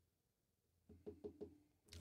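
Near silence, broken about a second in by a few faint, quick knocks in close succession.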